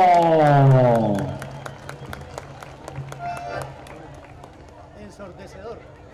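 A man's amplified voice holds a long, falling note through the PA for about a second. It gives way to a crowd applauding, a fairly quiet patter of many hand claps.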